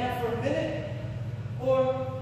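A man speaking, over a steady low hum.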